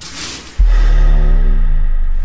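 Dramatic film score: a rushing whoosh, then about half a second in a sudden, very loud deep bass hit that holds under a sustained chord.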